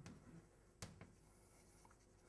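Chalk writing on a blackboard, very faint, with a few short taps of the chalk against the board near the start and around a second in.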